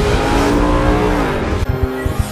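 A race-car engine sound effect running at high revs over film music, its note sagging slightly before it cuts off about a second and a half in.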